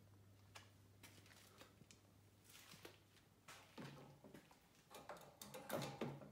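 Near silence, with a low steady hum and scattered faint clicks and taps of hand work on battery terminals and wiring.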